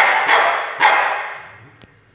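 Cavalier King Charles Spaniel barking: a couple of sharp barks, the second just under a second in, each echoing off hard tiled walls as it fades.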